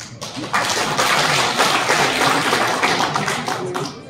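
Audience applauding, building up about half a second in and dying away near the end.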